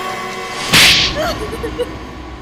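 A single loud whip-crack swish sound effect, sharp at the onset and hissy, about three-quarters of a second in, marking the cut between scenes, over faint background music.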